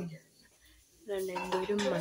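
A woman's voice trails off, then a near-silent pause of about a second. Then the voice resumes, with light clinks of dishes and cutlery.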